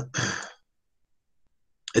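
A man's brief sigh at the very start, heard through a video-call microphone, then he starts speaking again near the end.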